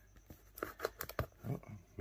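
Faint rustling and a few light clicks as a foil trading card pack wrapper is handled and worked at to open it, its plastic not yet properly cut.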